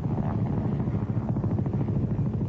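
AH-64 Apache attack helicopter flying past, its main rotor giving a rapid, even chopping over a steady engine drone.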